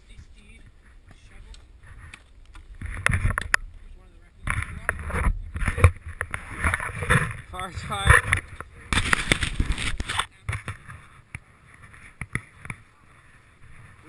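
Indistinct voices close to the microphone, with many clicks and rustles from the camera being handled, and a short burst of rushing noise about nine seconds in.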